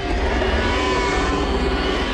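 Sound-effect roar of a Spinosaurus: one long, deep roar that holds steady and eases off near the end.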